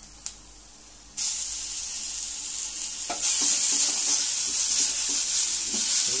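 Onions frying in oil in an aluminium kadai with paste just added: a sizzle starts suddenly about a second in and grows louder about three seconds in, while a spatula stirs the pan.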